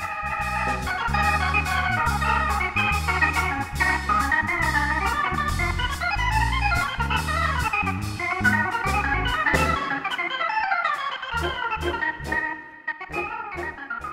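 Jazz band music led by an organ playing sustained, moving chords, over a walking bass line and drum cymbals; it thins out and gets quieter over the last few seconds.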